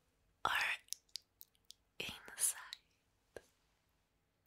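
A woman's voice close to the microphone in two short breathy whispers, about half a second in and again about two seconds in, with a few small mouth clicks between them.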